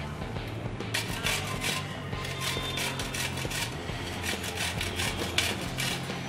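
Ridge gourd being grated on a round stainless-steel grater: a run of quick, repeated scraping strokes starting about a second in, over soft background music.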